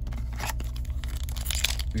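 Foil trading-card pack crinkling and tearing as a pack is drawn from the hobby box and ripped open, the rustling getting denser and louder near the end. A steady low hum runs underneath.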